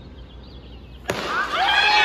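A stadium crowd hushed and murmuring, then a race's starting gun cracks about a second in and the crowd breaks into loud cheering, whooping and shouting.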